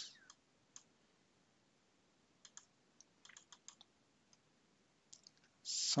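Faint, scattered computer mouse clicks, with a quick run of several a little past the middle.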